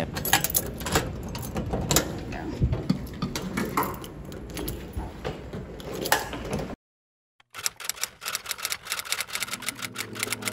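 Clicks, knocks and rattles of a door lock being worked by hand and the door handled, with the phone microphone rubbing, cut off suddenly about seven seconds in. After a moment of silence, a rapid run of typewriter-key clicks starts as a sound effect, with music beginning faintly near the end.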